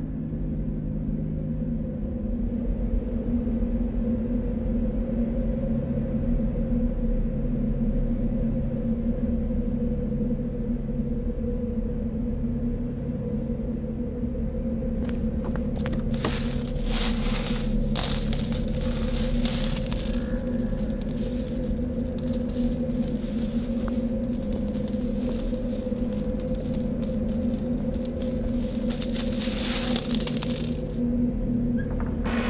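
A low, droning soundtrack of sustained tones whose bass notes shift slowly. From about halfway a dense run of metallic-sounding clinks and jingles plays over it.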